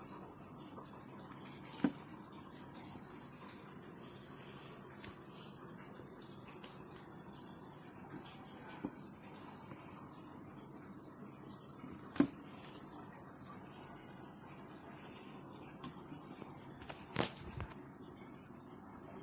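Quiet room hiss with a thin, steady high-pitched whine, broken by a few short sharp clicks of the plastic wall switch being handled on a stone countertop: one a couple of seconds in, two close together about two-thirds through, and one near the end.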